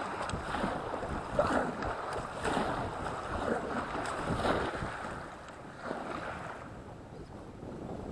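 Kayak paddle strokes splashing on alternate sides, a stroke roughly every second, over water rushing along the hull and wind buffeting the microphone; the strokes ease off over the last couple of seconds.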